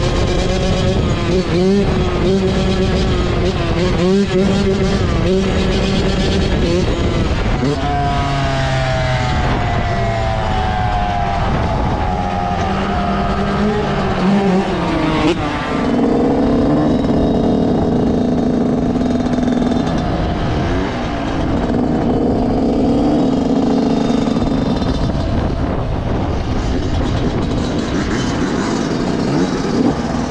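Yamaha YZ125 two-stroke single-cylinder engine being ridden hard. Its revs climb in repeated rising sweeps through the middle, as it shifts up through the gears, then settle to a steadier, lower note in the second half.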